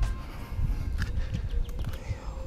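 Fluctuating low rumble of wind on the microphone, with a few sharp clicks and knocks about a second apart.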